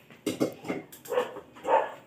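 A dog barking, a run of about four short barks roughly half a second apart, the last the loudest.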